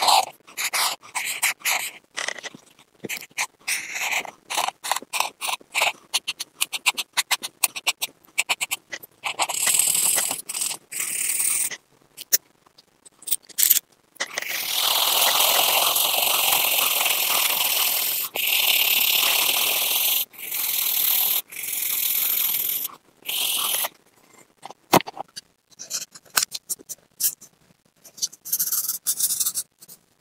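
Marker pen scratching on paper in many short, quick strokes, then longer continuous scribbling in stretches of a few seconds each from about halfway through, then short strokes again near the end.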